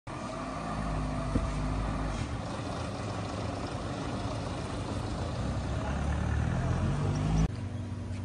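Outdoor ambience with a steady low rumble of a motor vehicle's engine, swelling in the first two seconds and again later on, with one sharp click early on. The sound drops abruptly in level shortly before the end.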